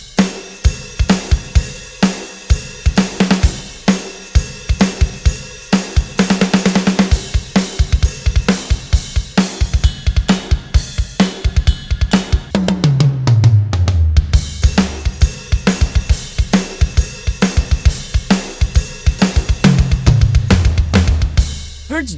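Sampled acoustic rock drum kit from the mix-ready Hertz Drums software library, played live from a MIDI keyboard: a steady groove of kick, snare and cymbals with fast kick-drum runs. There is a quick roll about six seconds in, and two tom fills step down in pitch, one about halfway through and one near the end.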